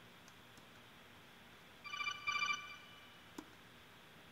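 A short electronic alert tone, a warbling trill in two quick pulses about halfway through, followed by a single sharp click.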